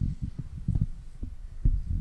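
Handling noise from a handheld microphone being picked up and moved: a series of dull, irregular low thumps.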